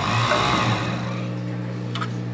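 Industrial overlock (serger) machine stitching a knit band along a fabric edge. It runs hard for about a second and then eases off, over a steady hum.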